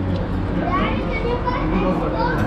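Background chatter of several voices, including high-pitched children's voices, with no clear words, over a steady low hum.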